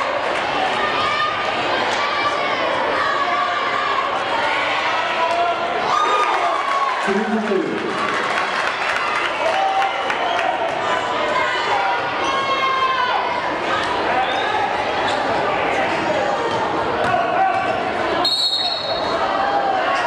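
Basketball being dribbled on a hardwood gym floor under steady crowd chatter, echoing in the gymnasium. About 18 seconds in, a short shrill blast of a referee's whistle stops play.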